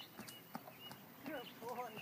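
Horse's hooves trotting on dry dirt: a run of soft, faint footfalls.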